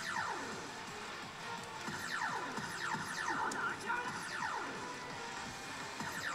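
Electronic music and sound effects from a Valvrave pachislot machine in play, with repeated falling swoops in pitch.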